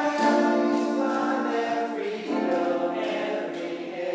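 Several voices singing long held chords in harmony, moving to a new chord twice.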